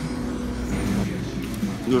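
Restaurant room noise: a steady low rumble that drops away about a second in, under faint background voices, with a single click at the very start.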